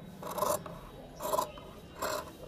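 Large tailor's scissors cutting through shirt cloth laid flat on a table: two cutting strokes, a little under a second apart.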